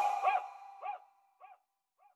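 The song's last sound: a short bark-like yelp repeated four times about 0.6 s apart, each fainter than the last like an echo, over the last note of the track dying away.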